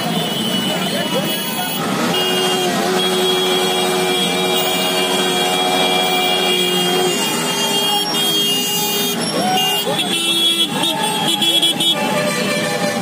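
A crowd of motorcycle riders shouting over their running engines, with a horn held for about five seconds starting about two seconds in and a shorter horn blast near the end.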